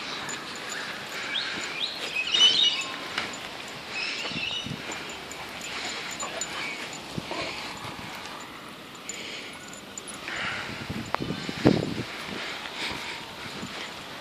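Dogs playing on grass, heard as faint scattered dog sounds such as panting and movement, with a few high chirps and a brief louder sound near the end.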